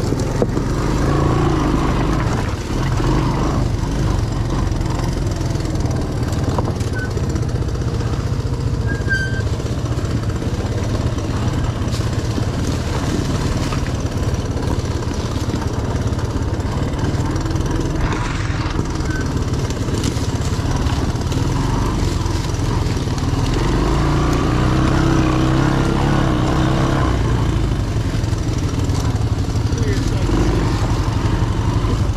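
Honda three-wheeler's single-cylinder engine running steadily at low speed while riding over a rough wooded trail. The engine note rises briefly about a second in and again for a few seconds later on.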